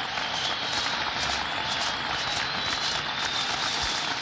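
A large crowd applauding: steady, dense clapping.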